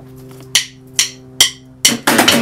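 Three sharp drumstick hits on a plastic paint bucket used as a drum, about half a second apart, over a faint held guitar chord. Near the end a loud guitar strum comes in as the song starts.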